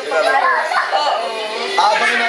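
Speech: a woman talking into a microphone, heard through a television's speaker.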